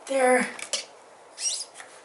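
A brief vocal sound at the start. Then small metal parts click and there is a short rising squeak as the water pump impeller and shaft are worked out of a Honda CRF450R's engine side case. The pump shaft has a lot of play, a sign that the pump is worn.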